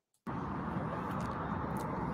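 Outdoor street ambience, a steady hiss with a low rumble of distant traffic, cutting in suddenly about a quarter second in after a moment of silence.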